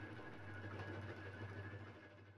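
Faint, steady low mechanical hum with a thin high whine above it.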